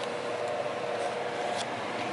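Steady hum of an electric fan running, with a couple of faint ticks.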